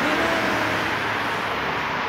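Road traffic on the adjacent street: a steady rush of cars going by.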